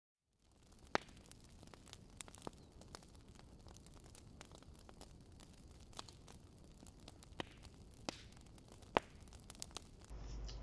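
Faint steady static hiss with scattered sharp clicks and pops; the loudest click comes about a second in and another just before the nine-second mark.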